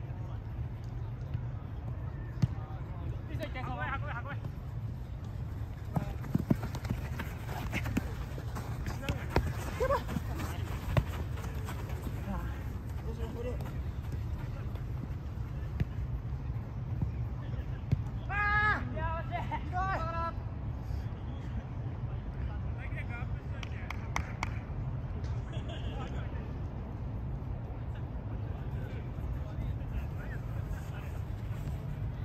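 Football players shouting to each other during play, with a couple of short calls early on and a run of high, strained shouts a little past halfway, over sharp knocks of the ball being kicked on artificial turf and a steady low rumble.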